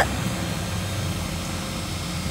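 Steady hum of the electric blower fans that keep lawn inflatables blown up, running without a break.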